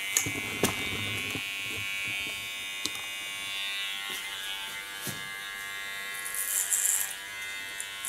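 Electric hair clipper fitted with a clipper comb attachment, buzzing steadily as it cuts short hair at the nape, with a brief louder hissing rasp near the end.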